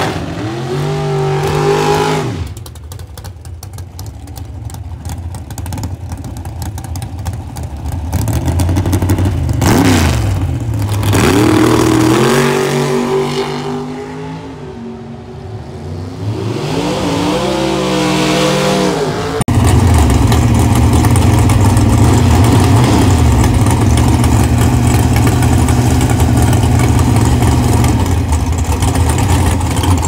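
Drag-race car engines revving hard and accelerating, the pitch rising and dipping several times as the cars launch and run down the strip. About two-thirds of the way through, the sound cuts suddenly to a race engine idling loudly and steadily.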